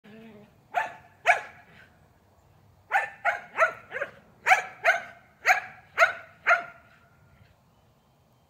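A dog barking in short, sharp barks: two about a second in, then a quick run of about nine more over the next four seconds before it stops.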